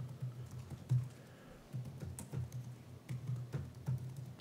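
Laptop keyboard typing: a run of irregular keystroke clicks as a line of code is typed.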